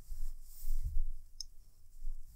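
Hands working yarn and a crochet hook while making a slip stitch: low dull handling thumps and one light, sharp click about one and a half seconds in.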